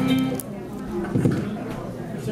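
Band instruments being tried between songs: a held chord stops abruptly about half a second in. About a second later comes a single short plucked note or strum.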